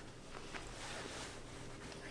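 Quiet room tone: a faint, steady hiss with a low hum, and no distinct event.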